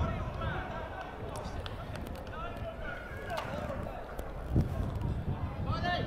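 Faint, distant voices of players and spectators calling out across an open football pitch, over a steady outdoor rumble, with one low thump about four and a half seconds in.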